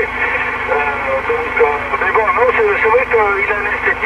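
A man talking in French over a CB radio on single sideband. It comes through the set's speaker thin and narrow, with a steady low hum underneath.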